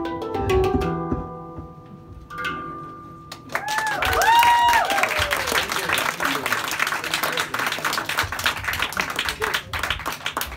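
Hang drum notes struck and left ringing as the piece ends. About three and a half seconds in, audience applause breaks out with a few rising-and-falling whoops of cheering, and the clapping goes on.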